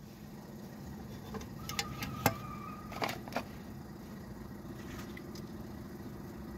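A faint steady mechanical hum, like a running engine in the background, with a few light clicks and knocks, the sharpest a little over two seconds in.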